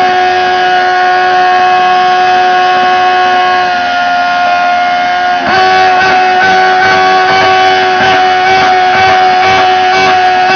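Four-cylinder motorcycle engine held at very high revs while standing still, a loud, steady, high-pitched scream; a little past halfway it dips briefly, then carries on rougher and choppier, as if bouncing off the rev limiter. This sustained over-revving is the kind of abuse that wrecks an engine.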